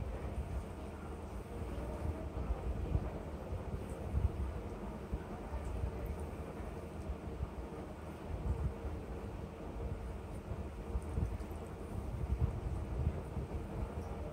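Steady low rumble with small uneven swells and a faint steady hum; no clear splashing or squelching stands out.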